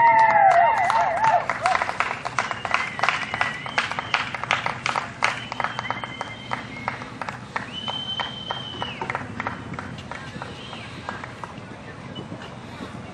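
Spectators clapping and cheering for a horse-and-rider round, with cheering voices at the start and two long whistles in the middle; the clapping thins out and fades toward the end.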